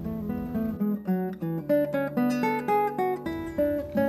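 Background music: an acoustic guitar picking a melody of separate notes.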